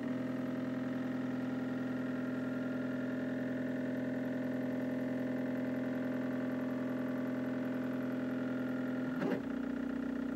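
Stepper motors of a hobby CNC router driving the Z axis down to zero, a steady whine that starts suddenly. About nine seconds in there is a brief clatter, and the whine changes.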